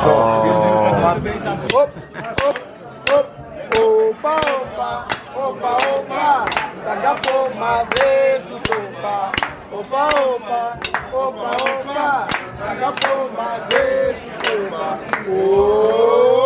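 A group clapping a steady beat, about three claps every two seconds, while a voice sings a bending melody over it.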